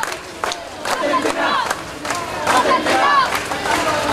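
A crowd of Argentina football supporters marching and shouting. Many young men's voices cheer and call out over one another.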